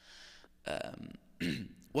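A man's breath and a short throat sound close to a handheld microphone, followed by a brief vocal sound just before he goes on speaking.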